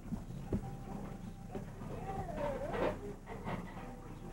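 A camcorder being handled and moved, with a couple of low knocks in the first second, and faint voices in the room.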